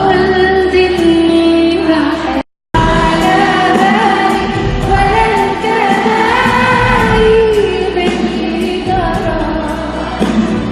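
Live Arabic pop song: a woman singing a melismatic melody into a microphone over a live band with drum kit, hand percussion and keyboard. The sound cuts out completely for a moment about two and a half seconds in, then the song carries on.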